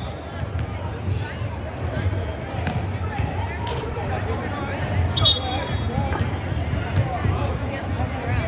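Basketball bouncing and knocking on a hardwood gym floor and hoop during free throws, the loudest knock about five seconds in, over the low murmur of a large gym, with a couple of brief high squeaks.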